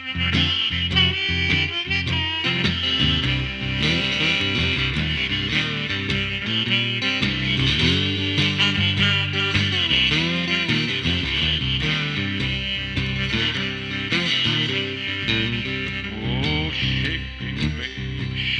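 Raw blues instrumental on electric slide guitar played through a small amplifier, with a rack-held harmonica playing long held notes over it. Rhythmic chopped chords at the start, and sliding guitar notes around the middle.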